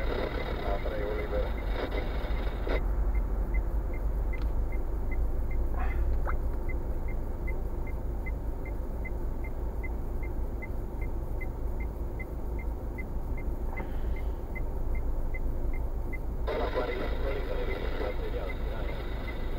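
Low idle rumble inside a stationary car's cabin, with the turn-signal indicator ticking steadily at about two to three clicks a second; the ticking stops about two seconds before the end.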